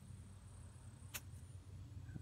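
Near silence: faint steady background with a single short click just past a second in.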